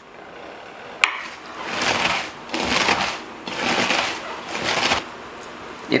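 Hands tossing and squeezing salted shredded cabbage in a mixing bowl: a crisp rustling crunch in three swells of about a second each, after a sharp click about a second in.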